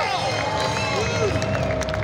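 Concert intro playback in a hall: clean held tones that slide up and down between pitches, over a low crowd rumble.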